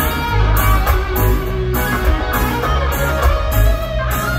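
Live reggae band playing: electric guitar over a heavy bass line and drums with a steady beat, heard through the venue's sound system.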